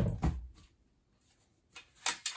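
A rifle in its chassis being handled and turned over: a quick cluster of knocks and rubbing in the first half second, then quiet apart from one faint tap near the end.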